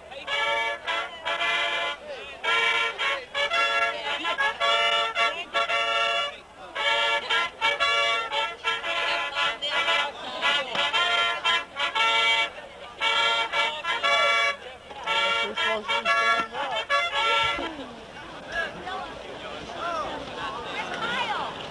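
A band playing a tune in short, punchy brass chords, separated by brief gaps; near the end the music stops and fainter voices are left.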